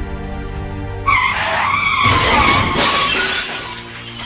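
Car tyres screeching in a skid from about a second in, running into glass shattering about a second later, over background music.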